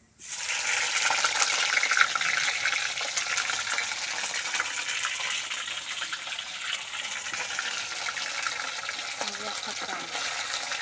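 Fish pieces frying in hot oil in a steel kadhai: the sizzle starts suddenly as they go into the oil, is loudest for the first couple of seconds, then runs on as a steady crackling sizzle.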